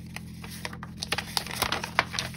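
A sheet of paper folded into eighths being unfolded by hand: crisp rustling and crackling of the creased paper, with the crackles coming thicker in the second half.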